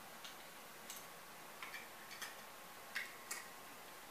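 Faint, irregular clicks of small die-cast toy cars being handled and set down, knocking against one another, about seven clicks with the loudest near the end.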